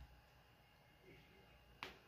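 Near silence: quiet room tone, broken by a single sharp click near the end.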